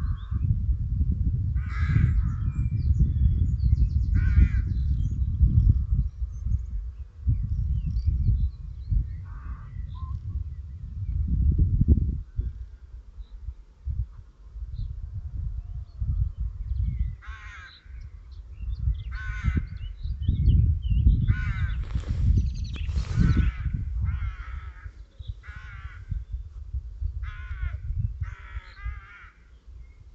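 Birds calling in short, repeated calls, scattered at first and crowding together in the second half. Under them, wind buffets the microphone in an uneven low rumble that swells and drops.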